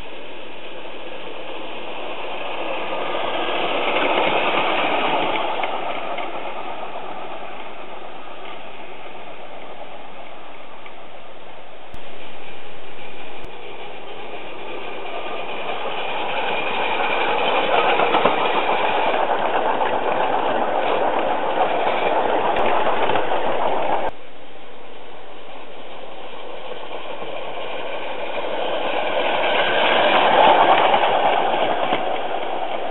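7¼-inch gauge live-steam Crampton locomotive running along the track, its steam exhaust and running gear growing louder as it passes close by, about four seconds in, for a long stretch in the second half and again near the end.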